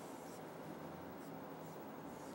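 Faint strokes of a marker pen on a whiteboard as a long curved line is drawn, over a low room hum.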